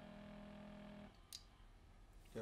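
Near silence: a faint steady hum from the testo 380 particle counter's flushing pump, which stops about a second in as flushing ends, followed by a single faint click.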